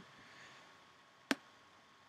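A single short, sharp click about a second and a half in, against near silence.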